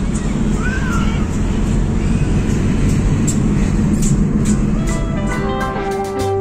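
Inside a moving car: a steady low engine and road rumble in the cabin. Music comes in about five seconds in.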